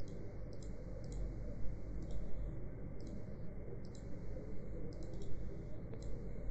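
Computer mouse clicking, short faint clicks about once a second, some in quick pairs, over a steady low hum of microphone and room noise.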